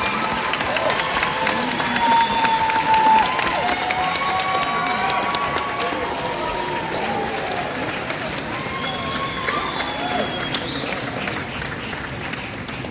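Concert audience applauding, with shouts and sharp whistles held for a second or two at a time. The applause eases off slightly toward the end.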